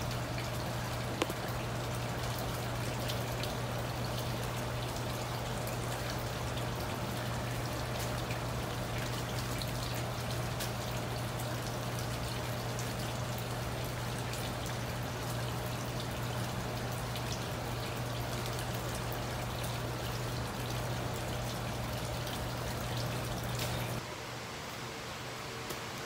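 Water trickling and splashing in a recirculating hydroponic tomato system, over a steady low hum. Near the end it drops off to quieter room tone.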